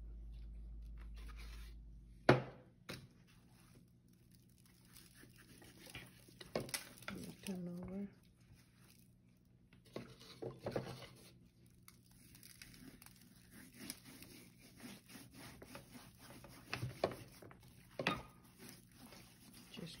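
Hands rubbing and massaging spice rub into the skin of a raw whole duck on a metal sheet pan: soft wet rubbing and slapping with scattered small clicks. A sharp knock about two seconds in is the loudest sound, with two more knocks near the end. A steady low hum stops just before that first knock.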